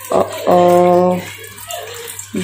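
Water pouring from a steel tumbler into a kadhai on the stove, with a voice holding one drawn-out sound partway through.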